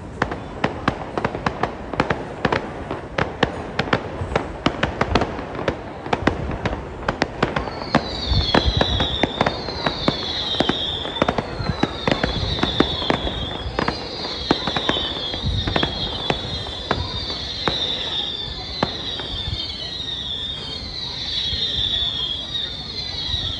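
Fireworks going off: a rapid, uneven string of sharp cracks and bangs. About eight seconds in, a high falling whistle joins them and repeats every second or so.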